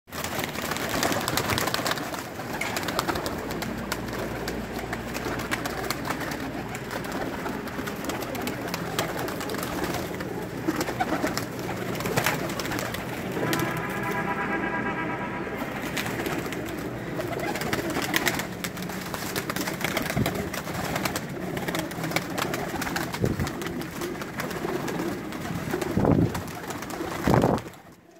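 A flock of Pakistani high-flyer pigeons cooing steadily in a loft, with many short clicks and wing flutters among them. A little past the middle, a held tone with several overtones sounds for about two seconds.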